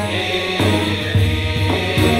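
A men's choir of Coptic deacons chanting a hymn in unison, low voices holding notes that move in steps about every half second.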